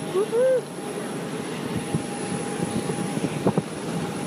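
Aircraft engine noise on an airport apron: a steady rumble with a steady whining tone through it. A short hum of a woman's voice right at the start, and two sharp clicks about three and a half seconds in.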